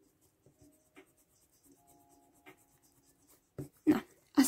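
Pilot FriXion erasable pen scribbling faintly on notebook paper, with a couple of light clicks, as a new pen is tried out to get its ink writing. A short louder sound comes near the end.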